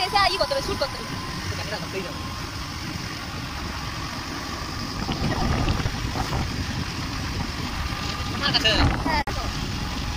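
Steady low road and wind noise of a moving vehicle, with wind buffeting the microphone. Brief voices are heard near the start and again near the end.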